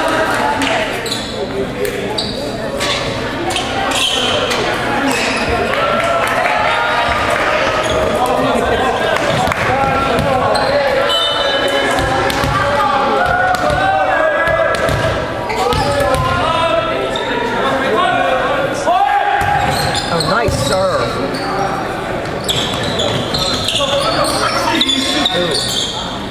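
A volleyball being struck and bouncing on a hardwood gym floor, repeated sharp hits that echo through a large hall, over the constant indistinct voices of players and spectators.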